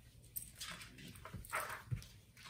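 A few quiet rustles and soft bumps as a hardcover picture book's page is turned, with a black dog stirring on the lap. The loudest rustle comes about a second and a half in.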